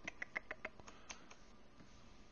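Faint, quick run of about eight light clicks from computer controls at the desk, stopping about a second and a half in.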